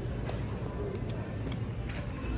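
Low, steady background hum of a large store's interior, with a few faint clicks and taps.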